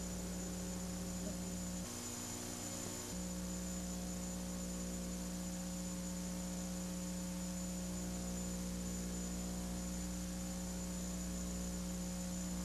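Steady electrical mains hum over faint hiss: a low buzz of several steady tones that shifts briefly about two seconds in.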